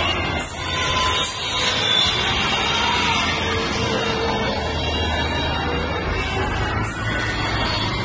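Music playing over loudspeakers for a group dance performance, steady throughout.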